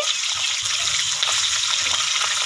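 Peanuts and soaked chickpeas sizzling in hot oil in a kadai, a steady frying hiss.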